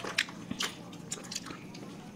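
Close-miked eating sounds of people biting into and chewing a burger and tacos: a scatter of short, irregular mouth clicks.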